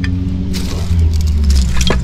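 A motor vehicle's engine running, growing louder about a second in, with a couple of sharp crunches of footsteps on broken tile and wood debris.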